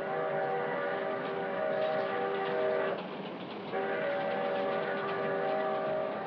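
A train's multi-note chime whistle sounds two long blasts, each about three seconds, with a short break between. Underneath is the steady rumble of the moving train and a faint clickety-clack of its wheels.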